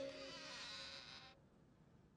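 Faint tail of the soft background score: its last low notes die away while a high hiss-like shimmer holds, then cuts off suddenly about a second and a half in, leaving near silence.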